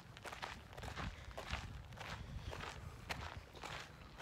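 Faint, irregular footsteps of people walking on a dirt and gravel trail.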